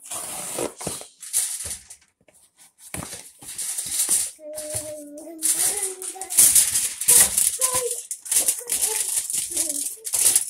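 Irregular bursts of rustling and rattling handling noise as things are moved about close to the microphone, with a young child's voice calling out briefly in the middle.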